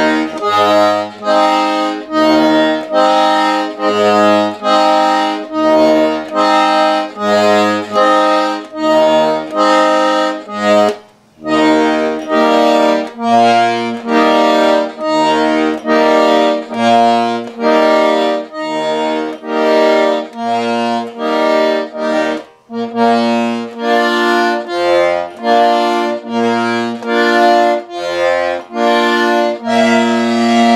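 Hohner piano accordion played solo: sustained chords over low bass notes that alternate in a steady pulse, in an improvised tune. The playing stops briefly about 11 seconds in, then carries on.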